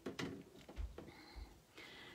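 Handling noise: a few light clicks and two soft low thuds as a paper card is picked up off a craft mat.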